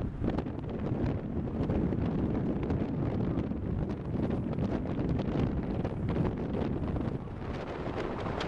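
Wind buffeting the microphone, a steady low rumble broken by frequent short gusty thumps.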